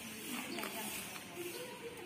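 Lovebirds in an aviary chattering with a continuous hissy twitter and short squeaky calls.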